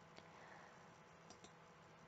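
Near silence: room tone with a few faint clicks, one near the start and a couple more around the middle.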